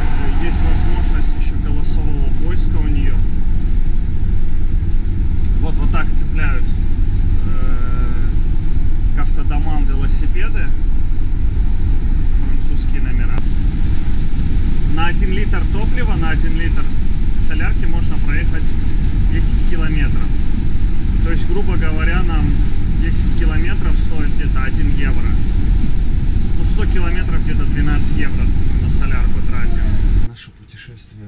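Steady low road and engine rumble inside the cab of a Pilote G740 motorhome cruising at motorway speed.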